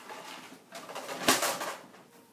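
Brown paper bag rustling and crinkling as a hand digs into it, loudest in the second half with a short thump at its peak.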